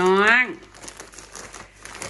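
Thin plastic produce bags crinkling and rustling as a hand lifts and shifts them, a faint, scattered crackle that follows a short spoken word.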